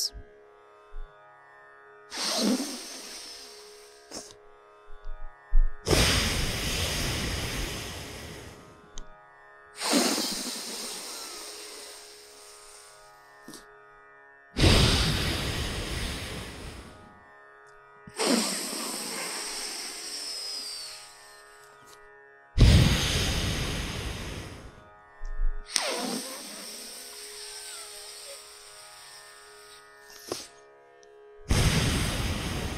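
Slow, deliberate breathing through one nostril at a time, close to the microphone. Long inhales and exhales alternate, each lasting a few seconds, over soft sitar-style background music: a round of alternate-nostril breathing, inhaling left and exhaling right.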